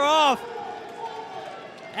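A male commentator's voice, cut short a moment in, then about a second and a half of fainter, steady crowd noise from spectators in an indoor track arena.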